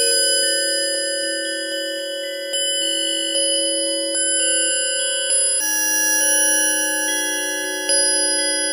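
An improvised keyboard piece on a bell-like synthesizer sound: sustained, overlapping chords ring on, with new notes struck every second or so.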